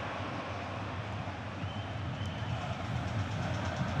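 Steady crowd noise in a football stadium, an even din of the spectators, with a faint thin high whistle-like tone for about a second around the middle.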